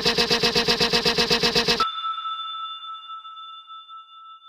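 Electronic music chopped into a rapid stutter of about a dozen pulses a second, cutting off abruptly a little under two seconds in. A single bell-like ding follows and rings on, slowly fading.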